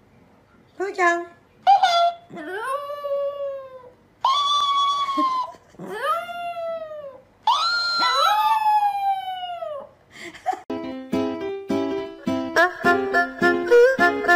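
Chihuahua howling: about six calls, two short high yelps and then longer howls that each rise and fall in pitch. Near the end, light bouncy background music starts.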